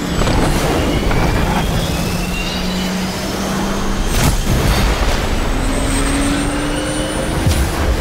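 Fighter jet's twin engines running up, with a steady rising whine, under trailer music. Two sharp hits, one about halfway through and one near the end.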